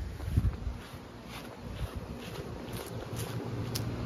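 Residential air-conditioning condenser units running with a low steady hum, mixed with wind rumbling on the microphone and a thump about half a second in.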